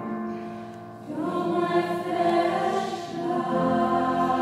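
Mixed choir of men and women singing sustained notes, the sound swelling louder and fuller about a second in.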